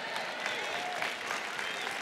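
Large indoor audience applauding, steady throughout, with faint voices mixed in.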